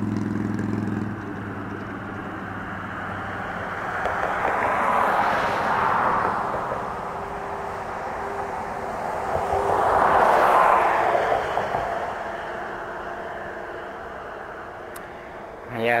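Road traffic passing over a bridge: two vehicles go by in turn, each swelling and then fading, the first peaking about five seconds in and the second about ten seconds in. A low steady engine hum stops about a second in.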